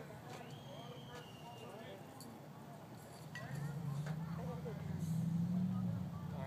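Faint distant voices chatter, and a little past halfway a low, steady motor-vehicle engine hum comes in and grows louder.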